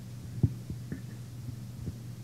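Steady low electrical hum from the hall's amplified sound system, with a few soft low thumps, the loudest about half a second in.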